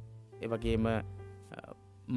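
A voice speaking briefly about half a second in, over steady background music.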